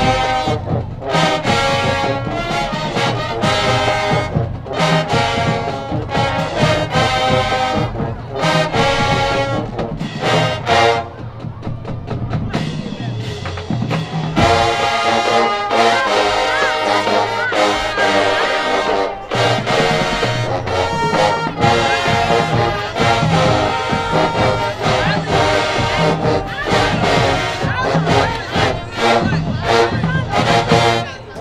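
Marching band playing: a full brass section with sousaphones, trumpets and trombones over drumline percussion. The band drops to a softer passage about eleven seconds in, then comes back in at full volume about three seconds later.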